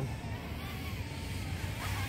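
LDARC KingKong 110GT brushless micro quadcopter on a 3S battery, flying low, its motors and RotorX 2535 bullnose props giving a thin whine that wavers in pitch with the throttle and rises briefly near the end.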